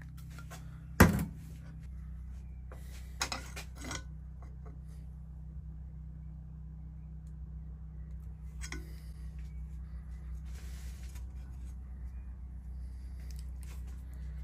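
Metal hand tools handled and knocked around a screw extractor set in a seized nut: one sharp metallic knock about a second in, then a few lighter clinks a couple of seconds later. A steady low hum runs underneath.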